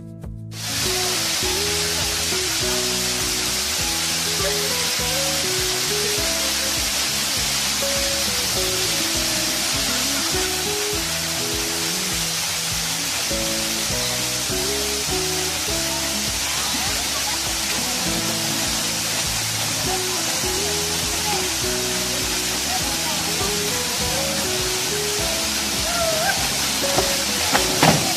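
A waterfall rushing steadily, starting abruptly about half a second in, with music playing a stepping melody underneath.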